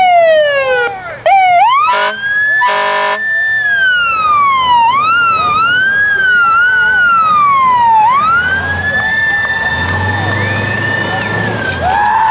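Fire engine's siren winding up and down again and again, with two short air-horn blasts about two and three seconds in. A low rumble runs under the siren in the last few seconds.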